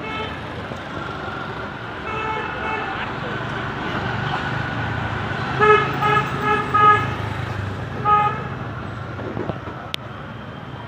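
Vehicle horns honking in street traffic: one toot about two seconds in, four quick toots around six seconds, and another just after eight seconds, over a steady engine and traffic rumble.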